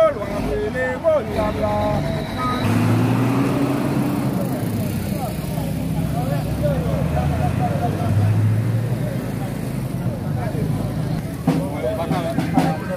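Crowd voices with a motor vehicle engine running close by. Its low, steady hum comes in about three seconds in and carries on under the chatter.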